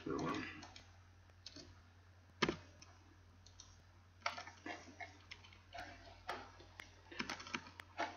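Computer mouse clicks and keyboard taps over a steady low electrical hum, with one sharp, loud click about two and a half seconds in and a string of lighter clicks in the second half, mixed with low mumbled speech.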